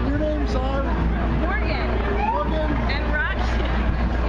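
People talking over the steady low rumble of city street traffic.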